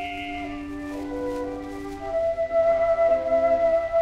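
Orchestral accompaniment on a 1921 acoustic Victor Red Seal record: several sustained instrumental notes, with a strong held note coming in about halfway and growing louder.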